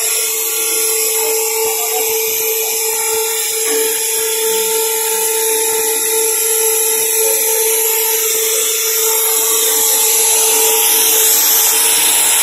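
Paper pulp molding machinery running steadily: a constant high-pitched whine over a loud hiss, with no change in speed.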